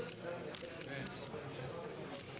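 Still-camera shutters clicking several times, heard over low voices.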